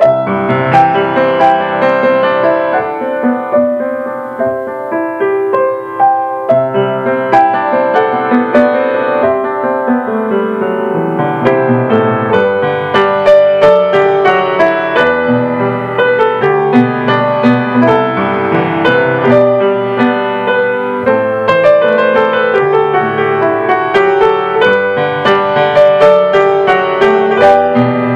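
Piano playing centering music: a continuous flow of overlapping notes that grows fuller and busier about halfway through.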